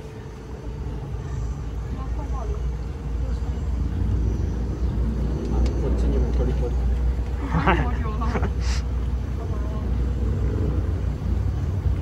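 Small passenger boat's motor running steadily under way: a continuous low rumble.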